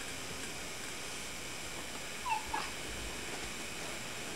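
A baby's brief, high vocal squeal about two seconds in, over a steady background hiss.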